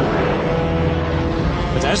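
Military jet aircraft flying low, a steady engine rumble with a faint drone on top.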